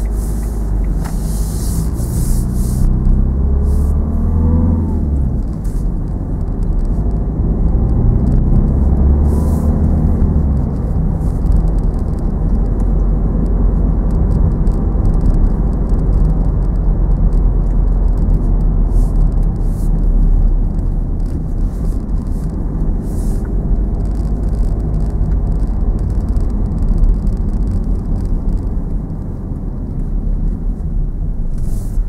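Car interior noise while driving on a wet road: a steady low engine and tyre rumble, with the engine note rising as the car accelerates about four seconds in and again about nine seconds in.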